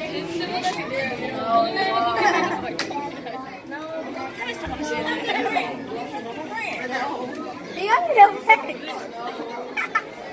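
Indistinct chatter of several people talking at once, with one louder voice sliding up and down in pitch near the end.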